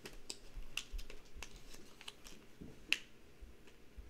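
Irregular small clicks and taps from hands handling a silver heart pendant, its chain and a plastic bag, with the sharpest click about three seconds in.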